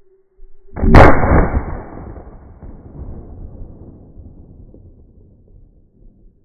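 A single shot from a .500 S&W Magnum revolver about a second in, very loud, followed by a long rolling echo that fades away over several seconds.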